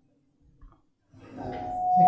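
Microphone feedback through a public-address system: a steady howling tone that sets in about one and a half seconds in and swells quickly in loudness as a handheld microphone is raised to speak.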